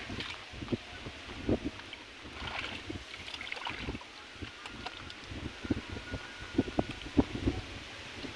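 Hands sloshing and squelching through shallow muddy water as a child and adult grope in the mud, giving irregular small splashes, with wind on the microphone.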